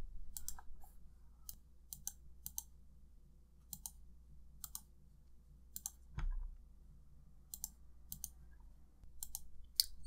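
Faint, scattered clicks of a computer mouse and keyboard, irregular but about one every half second, with a soft low thump about six seconds in.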